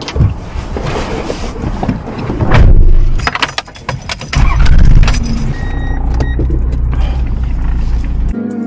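Keys jangling and a loud burst, then the Toyota Land Cruiser HZJ73's 1HZ inline-six diesel starts about halfway through and idles steadily, heard from inside the cab, with background music over it.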